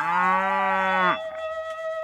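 Black-and-white dairy cow mooing once, a single call of about a second that rises at its start, holds steady, then stops. A held note of background music runs on after it.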